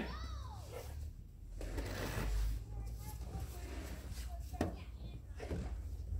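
A snow brush sweeping packed snow off a car's roof and windshield, one swish of about a second, followed by two sharp knocks, over a steady low rumble. A man's call trails off at the start and faint voices come and go.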